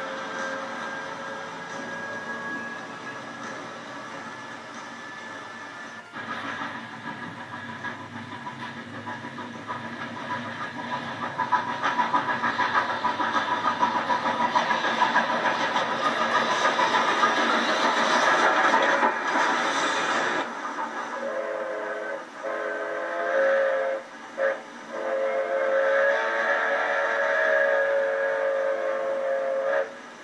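A train running along the track, its rumble and wheel clatter swelling from about a third of the way in. A little past two-thirds of the way in, the locomotive's horn sounds a chord in the pattern long, long, short, long: the standard signal for a grade crossing.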